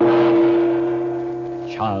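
A single loud struck musical tone rings out all at once and slowly fades, the opening sting of an old-time radio serial. Near the end a man's voice begins announcing.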